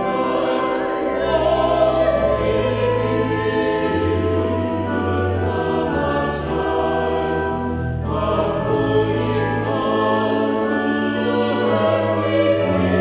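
Church choir singing, with sustained low notes held beneath the voices from about a second in.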